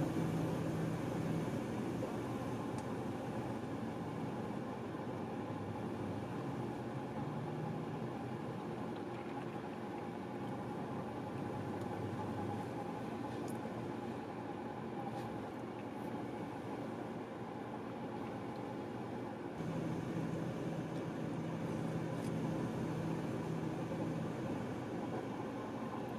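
Steady hum of a car's idling engine and air-conditioning fan, heard from inside the cabin. A low drone weakens midway and comes back stronger about twenty seconds in.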